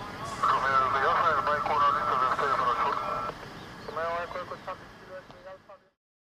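Muffled, unintelligible voice transmission over an air-band radio, a longer call then a short one about four seconds in; the sound cuts off suddenly just before the end.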